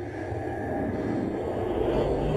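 Steady low underwater rumble, a murky wash of noise that deepens and swells slightly near the end.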